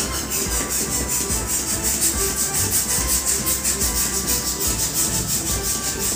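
Hand balloon pump worked rapidly back and forth, each stroke puffing air into a red latex balloon in a quick, even rhythm of whooshes.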